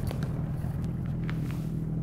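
Small boat motor idling steadily with a low hum. A few faint light clicks sound over it.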